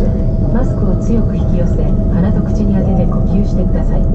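Cabin ambience of a parked Boeing 787 airliner: a steady low rumble with a constant hum, and passengers talking over it.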